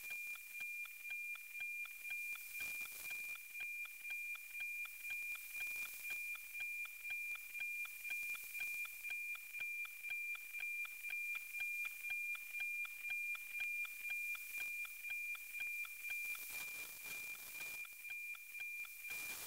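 NOAA 19 weather satellite's APT image signal received by an RTL-SDR on 137.1 MHz: a steady high tone with a tick-tock beat about twice a second, over radio hiss. Each beat is one scan line of the weather picture, coming in strongly near the best part of the pass.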